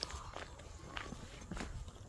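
Footsteps walking at an even pace, faint, about one step every half second.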